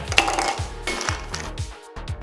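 Background music with a steady beat, and one sharp clink of ice against a metal cocktail shaker tin about a quarter second in.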